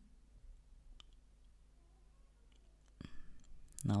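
Computer keyboard keystrokes: a few faint, scattered key clicks, then a louder run of clicks about three seconds in.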